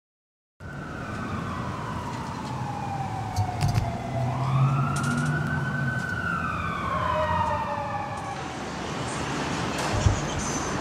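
An emergency-vehicle siren wailing over steady street noise, its pitch sweeping slowly down, back up, and down again before it stops about eight seconds in.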